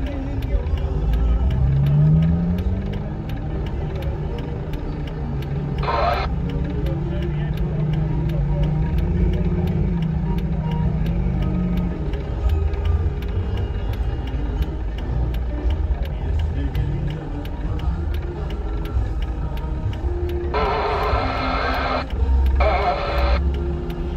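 A line of vehicles idling and creeping forward with a steady low engine rumble. A short horn blast sounds about six seconds in, and two longer horn blasts come close together near the end.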